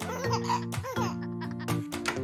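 Bright children's song accompaniment with steady held notes, and a baby giggling over it in the first second.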